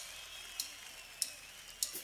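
A count-in before the drumming: four sharp clicks, evenly spaced about 0.6 seconds apart.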